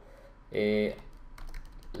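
A few keystrokes on a computer keyboard in the second half, after a short hesitation sound from the man typing.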